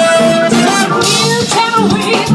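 Live funk band playing an instrumental passage: drum kit, bass and electric guitar with saxophones and trumpet. A long held note ends about half a second in while the rhythm section carries on.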